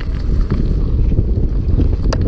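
Wind buffeting the camera microphone together with mountain bike tyres rumbling over a dirt trail at speed, with a faint rattle about halfway through.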